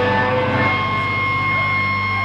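Electric guitar and bass guitar of a live rock band holding a loud sustained drone, a low note held steady, with a high, steady ringing tone joining about half a second in.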